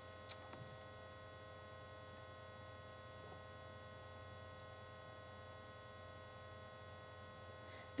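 Faint steady electrical hum in the recording's background, with several constant tones. There is a small click just after the start.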